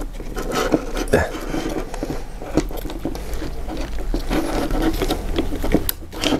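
Plastic housing parts and the brushless motor of a cordless impact wrench being handled and pulled apart by hand: irregular clicks, knocks and scraping.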